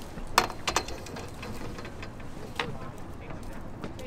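A few sharp knocks and clicks from a long-handled dip net and its pole being handled on a boat: two close together about half a second in, another near the middle, over low background noise.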